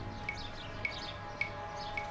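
Small birds chirping: short falling chirps repeating about twice a second over a faint steady hum.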